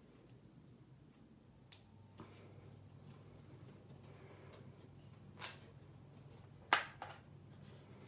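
Quiet handling of a paper tag and washi tape: faint rustling and a few light clicks and taps, the sharpest about two-thirds of the way through, over a steady low hum.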